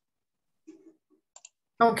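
Mostly quiet, with a brief faint low murmur, then two quick faint clicks about a second and a half in, and a voice starting to speak just before the end.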